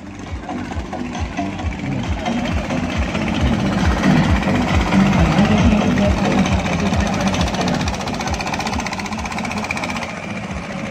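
Longtail boat engine running loudly as the boat passes close by, growing louder toward the middle and easing a little near the end.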